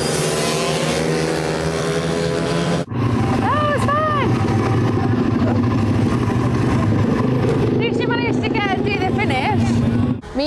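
Supermoto race motorcycles' engines running hard on track for about three seconds, then an abrupt cut to a steady low engine drone with people's voices briefly about a second later and again near the end.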